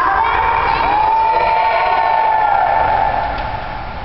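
A group of children cheering and shouting together, with one high voice holding a long shout for about two seconds in the middle, then the group falls away near the end.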